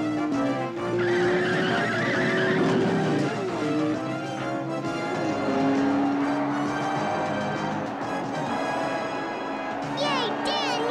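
Cartoon sound effects of a car engine running at speed and a tire screech starting about a second in and lasting a couple of seconds, over background music.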